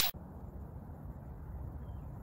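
Steady low rumble of outdoor background noise on the microphone, with no distinct events.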